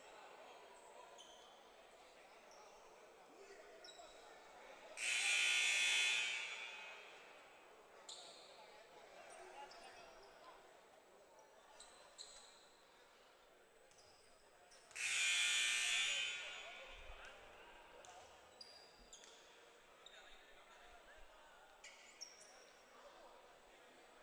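Two long blasts of a basketball court's game signal, each about a second and a half and some ten seconds apart, echoing in a large gym.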